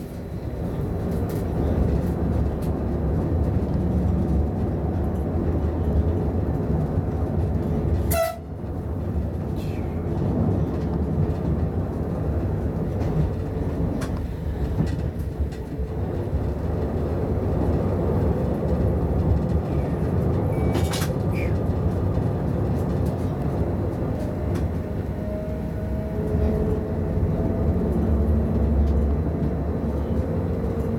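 ÖBB class 1016 electric locomotive running along the track, heard inside the driver's cab: a steady low rumble of running noise. The sound drops out briefly about eight seconds in, and a faint rising tone comes in near the end.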